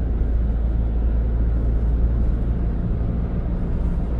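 Steady low rumble of a car's engine and tyres on the road, heard from inside the cabin while driving in city traffic.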